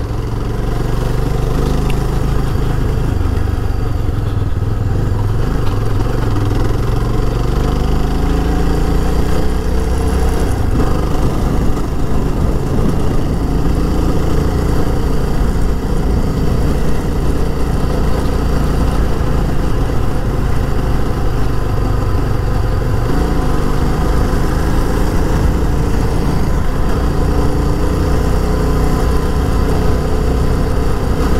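Yezdi Scrambler's single-cylinder motorcycle engine running under way, its pitch climbing with the throttle, dropping about ten seconds in and climbing again later.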